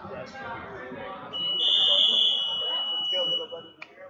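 Electronic scoreboard buzzer sounding one steady high tone for about two seconds over gym chatter, marking the end of the first period.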